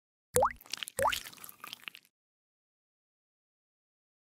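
Sound effect of liquid drops falling from a dropper: two quick rising plops about two-thirds of a second apart, followed by a brief patter of small wet clicks.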